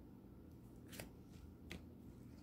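Faint shuffling of an oracle card deck in the hands, with two soft card snaps about a second in and again shortly after, over a low room hum.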